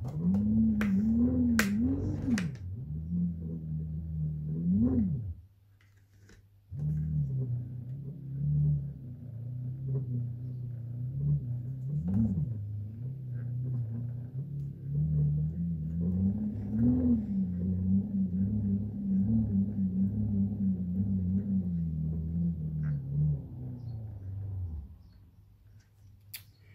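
Fisher & Paykel SmartDrive washing-machine motor being turned as a generator, its windings humming with a pitch that wavers up and down with the rotor's speed as it lights an LED board. A few clicks come at the start, and the hum stops for about a second a little over five seconds in, then runs on until it fades near the end.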